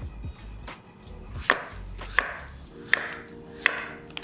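Chef's knife slicing butternut squash on a wooden cutting board: four evenly spaced knife strokes, one about every 0.7 s, in the second half.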